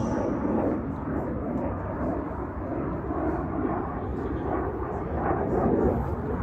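F-16 fighter jet flying a display, heard from the ground as a steady jet rumble with most of its sound low down, swelling and easing slightly.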